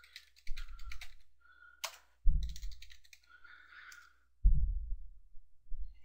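Computer keyboard typing in short bursts of keystrokes, with a couple of heavier low thuds about two and a half and four and a half seconds in.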